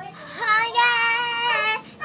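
A young girl singing, gliding up into one long held note that lasts about a second.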